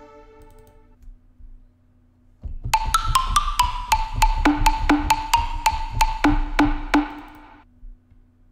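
reFX Nexus 2 software synthesizer playing the "XP EDM2 PL Afropluck" preset: a repeating pattern of short plucked notes with sharp clicky attacks, about four a second, over a low bass. It comes in about two and a half seconds in and stops shortly before the end, after the previous preset's sound has faded out.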